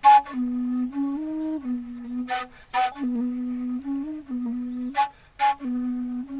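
Fula (Peul) flute of the Fouta Djallon playing a melody. A low line steps between a few close pitches underneath, and sharp, breathy accents come in pairs about half a second apart, one pair in the middle and one near the end.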